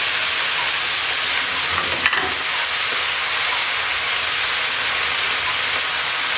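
Chopped mixed vegetables sizzling in hot oil in a pan, a steady hiss, with one small click about two seconds in.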